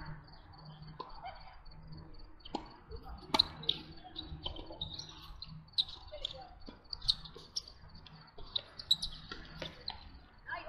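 Tennis balls struck by rackets during a doubles rally: a run of sharp pops at uneven gaps of about a second. Under them runs a steady, repeating high chirping of crickets.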